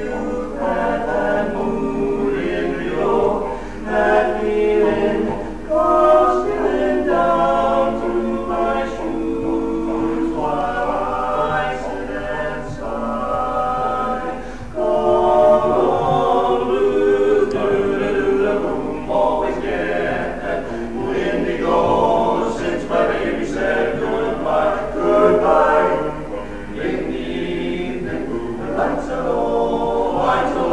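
Male barbershop quartet singing a cappella in close four-part harmony (tenor, lead, baritone and bass), in sustained phrases with brief breaks between them.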